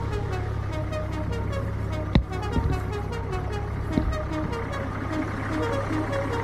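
Off-road 4x4 jeep's engine running steadily as it crawls over rough ground, with music over it. There is a sharp knock about two seconds in and a lighter one near four seconds.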